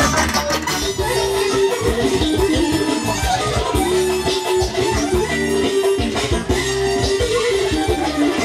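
A band playing dance music: a lead melody with long held notes over a steady, even bass beat.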